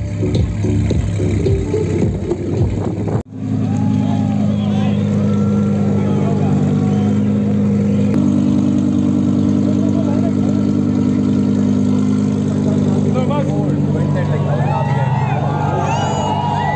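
Background music with a beat for about three seconds, then, after an abrupt cut, a Lamborghini Huracán's 5.2-litre V10 idling steadily as the car creeps to the start line, with people's voices over it.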